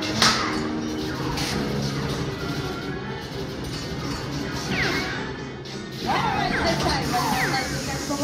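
Theme-ride show soundtrack: music playing under a sharp crash just after the start and a lighter knock about a second later. From about five seconds in come a run of quick falling whistles.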